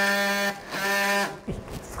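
Surgical bone saw on a robotic arm running with a steady whine as it cuts very hard knee bone. It stops about half a second in, runs again for about half a second, then stops.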